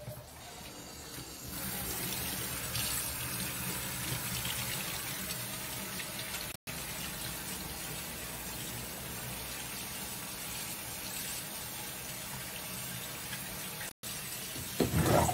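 Kitchen tap running into a stainless steel sink as hands are rinsed under the stream: a steady rush of water that comes up about a second and a half in, with one brief break about halfway.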